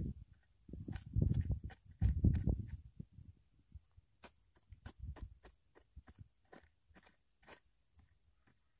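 Small hand hoe (cungkir) chopping and scraping into loose soil and weeds. Heavy dull thuds for the first few seconds, then a run of sharp, irregular clicks and ticks.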